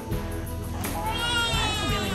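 Newborn baby crying, a high-pitched cry starting about a second in, over background music.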